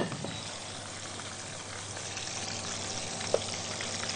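Steady sizzling of hot frying oil, with a soft tap a little past three seconds in.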